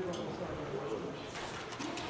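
Indistinct, off-microphone talking in the room, low and unclear enough that no words can be made out.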